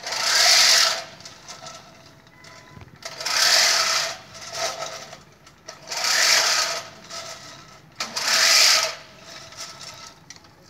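Manual push reel lawn mower cutting grass, its spinning reel blades whirring in four bursts of about a second each as it is pushed forward, with quieter gaps between pushes.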